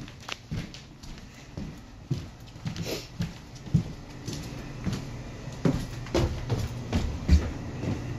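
Irregular knocks, bumps and rustling of a handheld camera being carried and moved about, over a steady low hum, with the loudest thump near the end.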